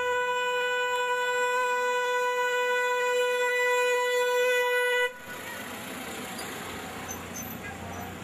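A car horn held in one long, steady note, cutting off suddenly about five seconds in. After that comes a quieter background of street and traffic noise.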